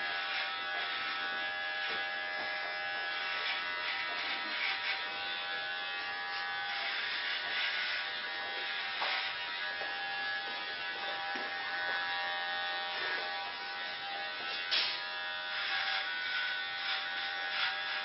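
Electric hair clippers running with a steady buzz, trimming short hair on a woman's head.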